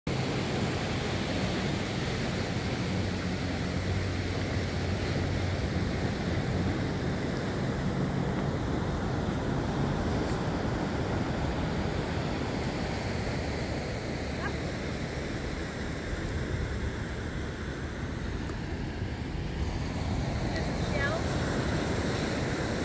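Steady rush of ocean surf and wind, with wind buffeting the microphone.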